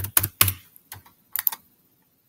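Typing on a computer keyboard: a quick run of keystroke clicks, a short pause, then a couple more about a second and a half in.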